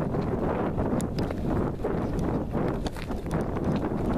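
Hurried footsteps on dry, stony dirt, a few steps a second, over wind rumbling on the microphone.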